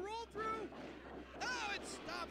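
Faint speech: a voice talking quietly, well below the level of the nearby conversation, over a light background hiss.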